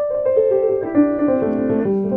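2001 Story & Clark baby grand piano played in the middle register: a line of about eight notes stepping down in pitch, each ringing on under the next. The piano has had almost no playing, its hammers barely grooved.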